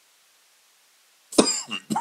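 A man coughs sharply once near the end, after quiet room tone, with a brief second burst just after it.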